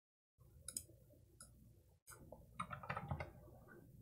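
Faint computer keyboard typing: a couple of separate key clicks, then a quick run of keystrokes in the second half as a number in the code is changed.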